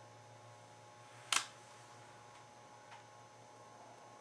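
Quiet room tone with a steady low hum, broken by one short sharp click a little over a second in and a much fainter tick near the three-second mark.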